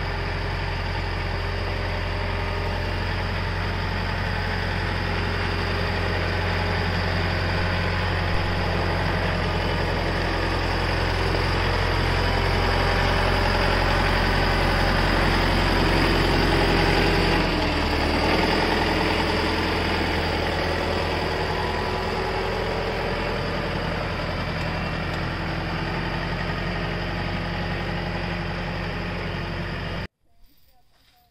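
Diesel farm tractor engine running steadily under load, growing louder as it comes close and then dropping in engine speed about eighteen seconds in.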